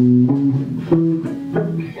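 A few single notes plucked one after another on an amplified electric string instrument, each ringing briefly before the next, like idle noodling.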